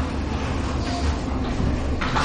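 Steady low hum with an even hiss over it: the background noise of the lecture room and its recording, with no one speaking.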